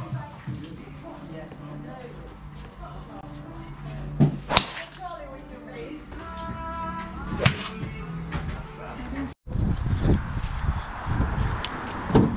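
Golf driver striking range balls off an artificial turf mat: sharp cracks about four seconds in, one just after, and another about seven and a half seconds in. Near the end a louder rushing noise takes over.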